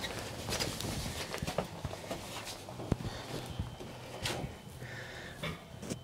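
Footsteps and light knocks and clicks of handling, with one sharp click about three seconds in.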